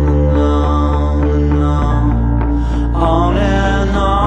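Instrumental break of a studio-recorded song: a band playing held bass notes that change about two seconds in, over steady drum hits, with a melody line that wavers in pitch near the end.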